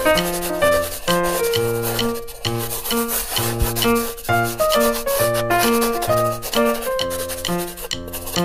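Light, bouncy background music: a melody of short plucked or keyed notes over a repeating bass line. A continuous scratchy rubbing noise runs over the music.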